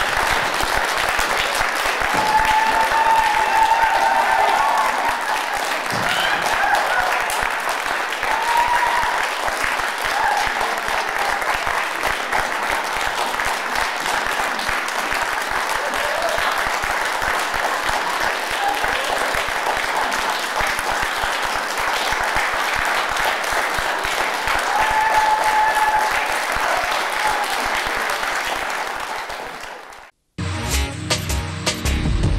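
Theatre audience applauding steadily, with a few brief voices calling out over the clapping; the applause fades out near the end.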